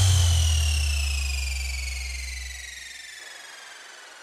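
Electronic dance music transition effect: a deep sub-bass note decays away while a high synthesised tone glides steadily downward, the whole fading out over about three seconds.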